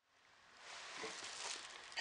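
Faint garage room tone with light rustling and handling noise from someone moving close to the microphone, starting about half a second in.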